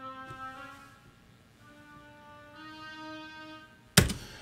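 Sampled oboe from a Kontakt library playing back a short MIDI phrase of a few slightly rising held notes, each switched to a different articulation by a Cubase expression map: a sustained note, then a note that swells up and one that fades away (crescendo and decrescendo). A sharp click right at the end.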